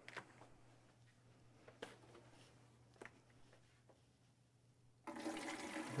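Near silence with a few faint clicks, then, about five seconds in, water starts pouring from a plastic jug into the Gaggia Classic espresso machine's water reservoir.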